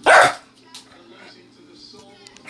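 A small black dog barks once, short and loud, right at the start.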